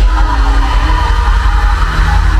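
Live worship band playing an instrumental passage through a loud PA system, with a heavy, steady bass and held keyboard chords and no vocals.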